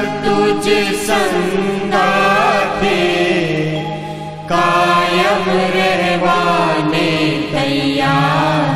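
Voices singing a Gujarati devotional bhajan, the notes held long and sliding in pitch over a steady low tone. The singing fades down about four seconds in and comes back at full strength half a second later.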